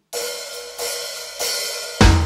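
Drummer counting in a garage-rock song on the cymbals: three even strikes about two-thirds of a second apart, each ringing and fading.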